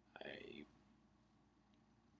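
A man's single soft, breathy word, then near silence: room tone with a faint low hum.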